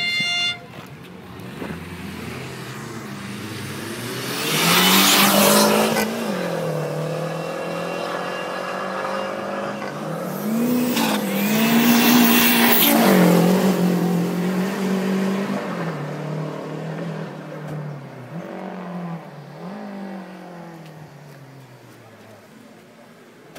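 Renault 5 GT Turbo's turbocharged four-cylinder engine revving hard as the car drives past close by. It comes in two loud surges, about five and about eleven seconds in, with the revs rising and falling, then fades away near the end.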